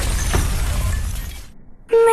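A loud burst of noise with no clear pitch, steady for about a second and a half and then fading out. A song with music begins right at the end.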